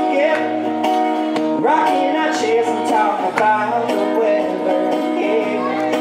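A man singing a country song live over his own strummed acoustic guitar.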